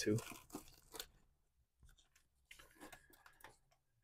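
Plastic DVD cases scraping against each other as one is pulled from a tightly packed shelf: a brief faint rustle, then a few faint clicks and taps of the case being handled near the end.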